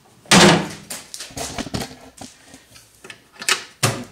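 Steel lid of a U.S. General tool chest shut with a loud clunk about a third of a second in. Lighter clicks and rattles follow, then a sharp click near the end as the lid's closing engages the drawer locks.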